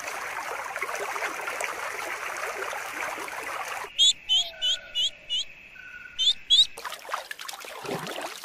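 Water trickling and splashing for about four seconds. Then a small bird gives sharp high chirps: five in quick succession, a short pause, and two more.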